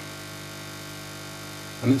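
A steady, low electrical hum with a few even overtones, holding at one level.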